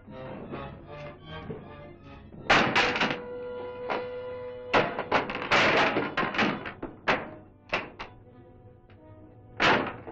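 Dramatic film-score music, pulsing evenly at first and then holding a chord, broken by a series of loud thuds and knocks. The loudest come about a quarter of the way in and again just before the end.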